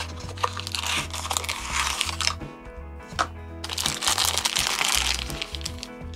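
Small paperboard toy-car box being opened by hand, its flap and sides rustling and scraping with small clicks in two spells, the first two seconds and again around four to five seconds in, over background music with a steady bass line.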